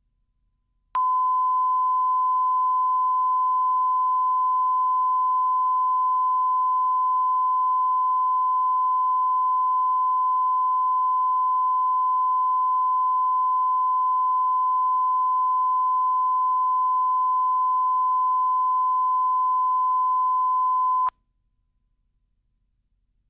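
Bars-and-tone 1 kHz line-up tone, the steady test tone recorded with colour bars at the head of a videotape for setting audio levels. It starts abruptly about a second in, holds one unchanging pitch for about twenty seconds and cuts off suddenly.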